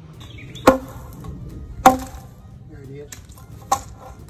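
Hammer blows on the Quikrete concrete collar at the base of an old wooden 4x4 fence post, knocking the concrete off. There are three sharp strikes at uneven intervals, each followed by a brief ring.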